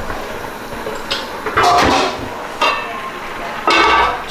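Aluminium pot lid and cookware clanking on a gas range as the lid goes onto a large pot of simmering curry: a few sharp metallic clanks, the loudest about a second and a half in and again near the end, over a steady background hiss.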